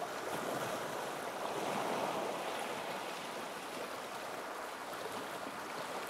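Steady rushing water, an even noise with no music notes standing out, swelling slightly about two seconds in.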